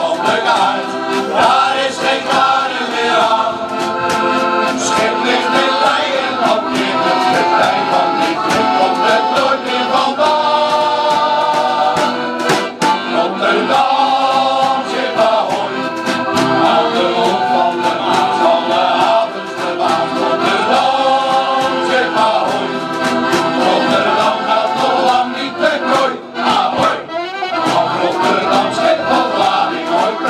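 Men's shanty choir singing a sea shanty together, accompanied by accordions.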